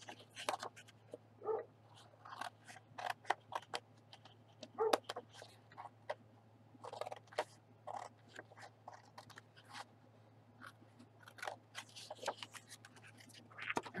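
Scissors cutting through patterned scrapbook paper: a run of short, irregular snips and paper crackles, over a faint steady low hum.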